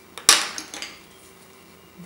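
A painting tool clinking against a hard palette as paint is picked up: one sharp clink about a quarter of a second in, followed by a few lighter clicks.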